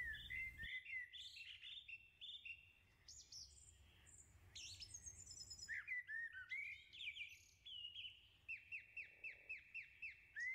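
Faint songbird chirping and singing: many short chirps and whistled notes from several birds, with a quick run of rapidly repeated notes near the end.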